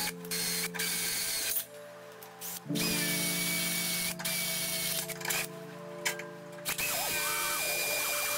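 Cordless drill boring into a steel plate, its bit cutting metal and throwing chips. It runs in stretches with a steady whine and pauses twice, about a second and a half in and again a little past the middle, over background music.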